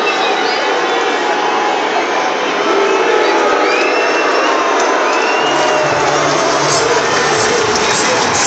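Large stadium crowd cheering and shouting, with high voices and whistles rising and falling over the din. A low rumble joins in a little over five seconds in.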